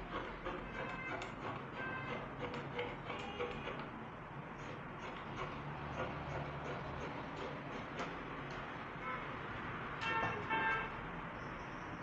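Scissors snipping through stretch net fabric on a table, a run of short sharp cuts. Faint pitched tones sound in the background, loudest about ten seconds in.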